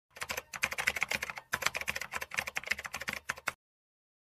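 Computer keyboard typing sound effect: a rapid run of key clicks in two stretches, with a short break about one and a half seconds in, stopping shortly before the end.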